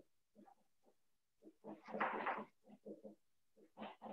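Marker squeaking on a whiteboard in short, irregular strokes as the problem heading is written, the longest squeak about halfway through.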